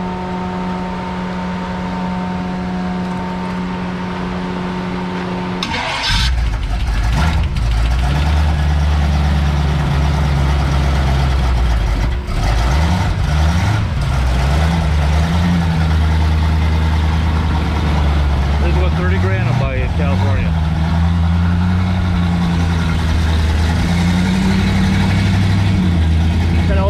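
Hot-rod V8 engine starting: a steady hum for about six seconds, then the engine fires with a sudden burst about six seconds in and settles into running, its revs rising and falling a few times as the throttle is blipped.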